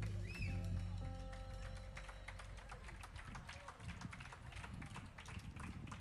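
A live jazz quartet's final notes (bass and a held mid tone) ring out and fade during the first couple of seconds, with a short whistle near the start. Audience clapping, heard as many separate sharp claps, takes over and continues as the music dies away.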